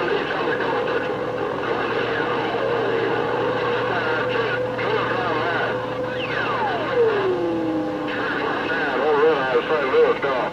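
Galaxy CB radio's receiver audio: a busy channel of garbled, overlapping distant stations under static, with a steady whistle. About six seconds in, a heterodyne whistle slides down in pitch.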